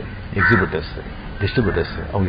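A man's voice speaking in short, garbled phrases, with a brief harsh, rasping sound about half a second in.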